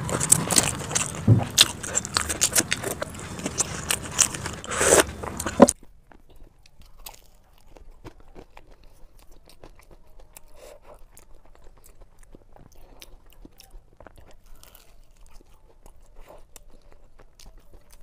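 Close-miked eating of crispy samosas, played at double speed: dense crunching and chewing of fried pastry. About six seconds in it drops suddenly to much quieter chewing with soft, sparse crunches.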